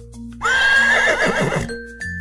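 A horse whinny sound effect: one wavering neigh lasting a little over a second, starting about half a second in. It plays over light background music with held notes.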